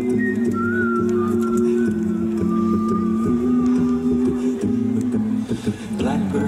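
Male a cappella group singing sustained wordless chords that change every second or so, with a thin high line weaving above them.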